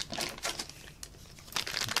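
Clear plastic packet crinkling as it is handled, sparse crackles at first, then dense and louder in the last half second as it is picked up.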